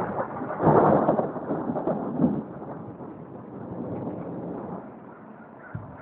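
Thunder rumbling, loudest about a second in and then dying away over the next few seconds.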